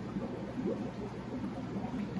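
Steady fish-room background: a low hum and hiss from running aquarium air pumps and filters, with water bubbling.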